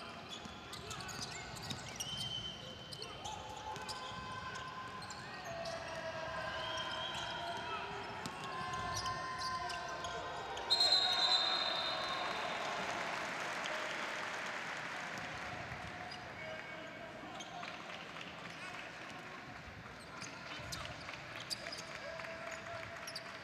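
Live basketball game court sound in an arena: the ball bouncing, sneakers squeaking on the hardwood floor and players calling out. About eleven seconds in a sudden loud high tone is followed by a swell of crowd noise that fades over several seconds.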